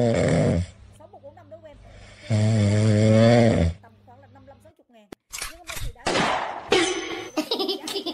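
Two long, loud snores about a second and a half apart, each one steady drawn-out breath with a low buzzing pitch, from a sleeping cat. Near the end come a few sharp clicks and short bursts of voice-like sound.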